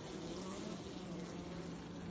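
Honey bee colony buzzing on the frames of an open hive, a steady, even hum.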